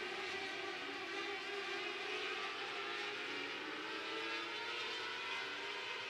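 Several 600cc micro-sprint cars racing on a dirt oval, their engines making a steady, layered drone whose pitches drift slowly as the cars lap.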